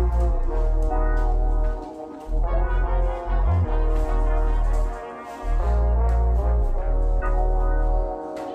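Background music: sustained horn-like chords over deep, heavy bass notes that drop out briefly every few seconds.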